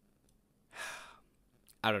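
A man's single audible breath, about half a second long, a little under a second in, followed by the start of his speech near the end.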